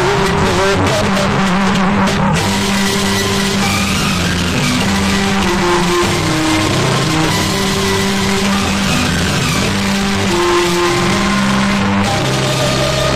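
Music blasting at high volume from banks of horn loudspeakers, harsh and distorted, with a held bass line and melody notes over a dense hiss, steady and unbroken.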